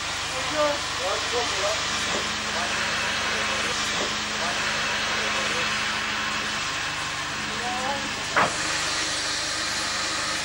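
Steam hissing steadily from the front end of North British Railway 0-6-0 steam locomotive No. 673 'Maude' as she stands in steam, with a single sharp knock about eight seconds in.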